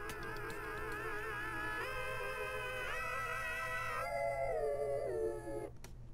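Playback of a soloed audio clip in Ableton Live, just past a crossfade between two adjacent clips: a held, wavering vocal-like tone with vibrato that steps up in pitch twice, then slides down and stops shortly before the end.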